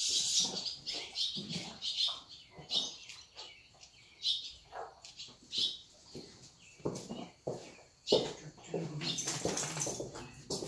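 Small birds chirping in quick, short, high notes throughout, with a few soft low thuds and rustles; the strongest thud comes about eight seconds in.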